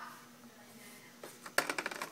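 Spools of glitter tape clicking and rattling against a plastic storage bin as they are handled. A quick run of light clicks comes in the second half.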